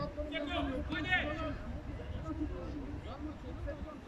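Men's voices calling out in the open air: two short loud calls in the first second and a half, then fainter scattered voices, over a steady low rumble.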